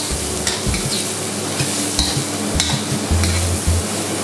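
Garlic, shiitake mushrooms and onions sizzling in hot oil in a steel wok, with a steady hiss, while a ladle stirs them, scraping and knocking against the pan several times.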